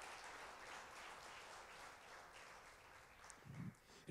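Faint applause from a church congregation, slowly dying away, with a brief low sound near the end.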